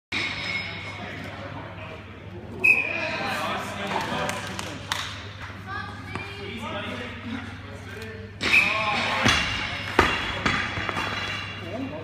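Shouting voices in a large gym hall, broken by several heavy thuds of strongman implements (a loaded log and an axle bar) hitting the tyres and lifting platform, the loudest about two and a half seconds in and again about eight and a half seconds in.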